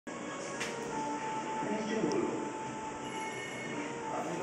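A steady rushing background noise, with a faint steady whine in the middle and faint voices in the background.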